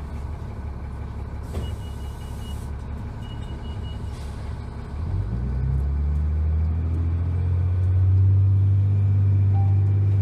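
Cummins ISC diesel of a 2001 New Flyer D30LF transit bus, heard from inside the bus, running low with a short hiss of air about a second and a half in and two short runs of high beeps. About five seconds in the engine is loaded and gets louder, its pitch rising briefly and then holding steady as the bus pulls away.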